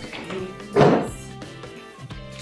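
Soft background music on guitar, with one loud thunk a little under a second in.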